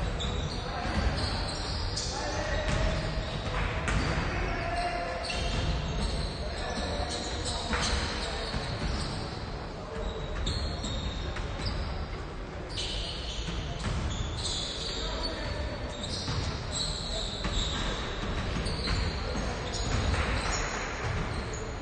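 Basketballs bouncing on a hardwood court in a large gym, with repeated sharp bounces and players' voices calling out during play.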